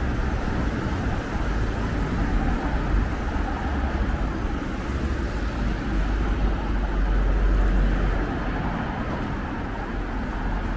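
Street traffic: cars driving past close by, a steady road rumble that swells as a car goes by about seven to eight seconds in.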